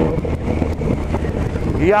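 Yamaha MT-09's three-cylinder engine running under way, with wind noise on the microphone; a man's voice starts near the end.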